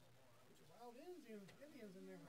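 Faint, distant conversation: a voice talking from about a second in, its words too faint to make out, over a low room hum.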